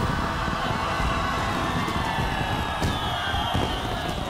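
Fireworks display: a dense, steady wash of crackling and bursting, with a faint high tone falling about three seconds in.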